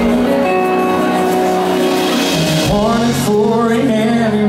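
Acoustic guitar playing slow, ringing chords, with a man's singing voice coming in about three seconds in.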